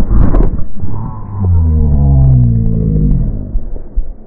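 Dirt bike crash: a burst of impact and scraping noise at the start, then a motorcycle engine whose pitch falls over about two seconds and fades.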